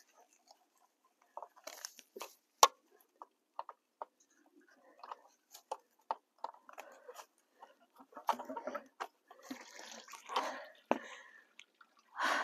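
Scattered light clicks and handling rustles, then, from about eight seconds in, the outflow of a small pond pump starting to splash and gurgle into the pond as water comes through the line: the line is not frozen.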